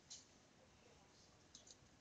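Near silence with a few faint computer mouse clicks, one just after the start and a couple near the end.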